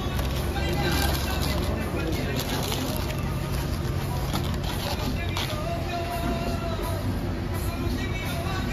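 Steady outdoor background din: a constant low hum with distant voices and faint music underneath, and no distinct sudden sounds.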